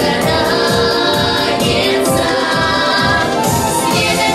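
Girls' vocal ensemble singing together into microphones over amplified backing music with a steady beat.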